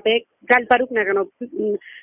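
Speech: a voice on a recorded phone call, the sound thin and narrow as over a telephone line.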